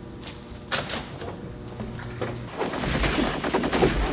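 A door latch clicks a few times as a door is opened. About two and a half seconds in, a film soundtrack of rapid gunfire takes over, many shots a second.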